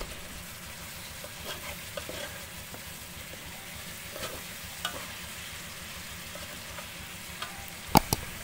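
Metal ladle stirring fish and lemongrass in an aluminium pot over a steady hiss of cooking, with a few light scrapes and clinks against the pot and a sharper clank at the very end.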